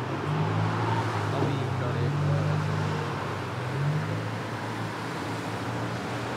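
Road traffic: a motor vehicle engine running, its pitch rising twice, over faint distant voices.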